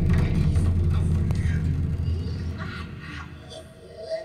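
Recorded music played back through a pair of large floor-standing loudspeakers in a small room: a deep bass note that begins just before and slowly fades over about three seconds, with lighter, scattered higher sounds above it.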